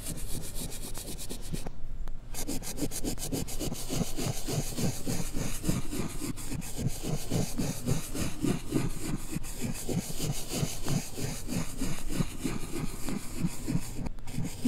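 Yellow chalk scribbling quick loops on a blackboard, played in reverse: a fast, even run of short rubbing strokes, about three or four a second, after a brief pause about two seconds in.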